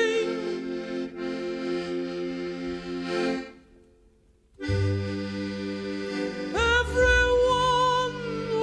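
Accordion playing held chords with a pulsing repeated note, breaking off about three and a half seconds in for a second's near silence, then coming back in with deeper bass notes and a higher wavering melody line.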